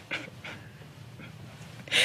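A woman's breathy laughter: a few short, soft breaths of laughter just after the start, a quiet stretch, then a louder breathy laugh near the end.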